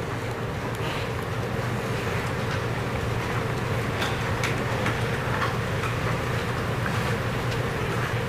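Steady low hum and rumble of room noise picked up by an open courtroom microphone, with a few faint ticks and rustles.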